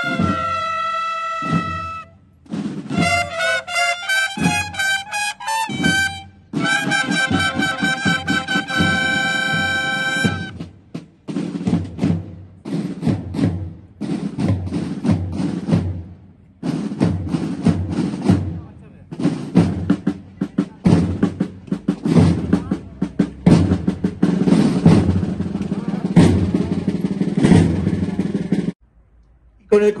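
Processional cornet-and-drum band playing a march. Brass cornets sound long held notes and then a melody for about the first ten seconds, after which the drums carry on alone in a steady march beat, stopping shortly before the end.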